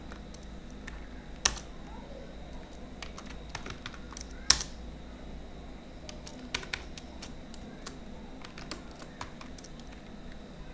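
Computer keyboard typing in scattered, irregular keystrokes, two of them louder than the rest, about one and a half and four and a half seconds in.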